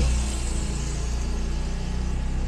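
A steady low hum with an even hiss behind it, like a motor or machine running continuously in the background.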